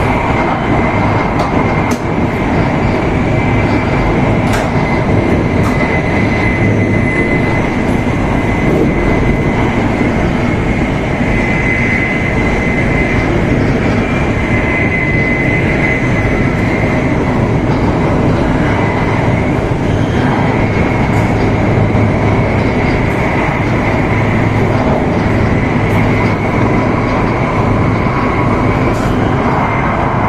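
Joetsu Shinkansen train running at speed on an elevated viaduct, heard inside the passenger cabin: a loud, steady rumble and rush with a steady high whine and a few faint clicks.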